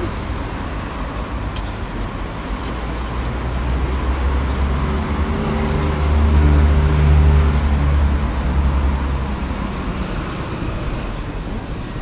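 Street traffic with a motor vehicle's engine running close by, its low hum swelling between about five and nine seconds in.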